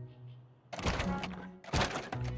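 Cartoon sound effects over background music: a loud, noisy rush starting about two-thirds of a second in, then a short, sharp thunk near the end.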